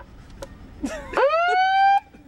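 Handheld megaphone's built-in siren: a single loud wail that starts about a second in, sweeps up in pitch and then levels off, and stops abruptly.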